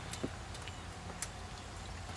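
Stout beer poured from a bottle into a glass, faint, with a few soft ticks of the bottle against the glass, over a steady low background hum.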